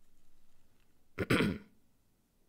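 A man clearing his throat once, a short loud rasp about a second in.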